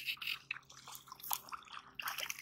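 Small splashes and drips of water from a hooked snook swirling at the surface of shallow water as it tires.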